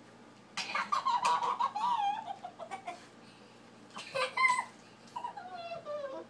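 A young girl's high-pitched squealing laughter in bursts: a long wavering one about half a second in that falls in pitch, a louder short one about four seconds in, and a shorter falling one near the end.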